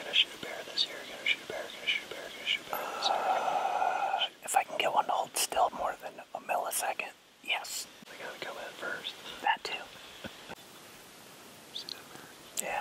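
Hushed, whispered talk. In the first few seconds there is also a string of short, high chirps about half a second apart.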